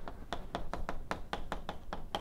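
Chalk writing on a blackboard: a quick, even run of sharp taps and clicks, about seven a second, as the chalk strikes the board.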